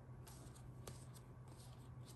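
Faint handling of tarot cards: several soft flicks and slides as cards are moved through a fanned hand.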